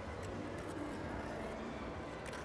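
Steady low background noise of an indoor ice rink, with faint scrapes and a few light ticks from figure skate blades on the ice.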